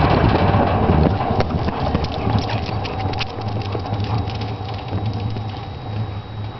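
Footsteps on a concrete patio, loud and close at first, then growing fainter as they move away, over a steady low hum.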